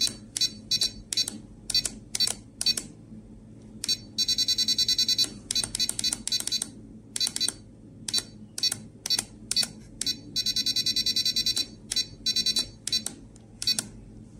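RadioLink RC6GS V3 radio transmitter beeping at each press of its menu buttons as the EPA travel values are stepped down. Some beeps come singly and some come in quick runs of many beeps.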